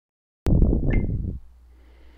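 Recording starting: after a moment of silence, a second-long burst of rumbling, crackling noise on the headset microphone, then a faint low hum.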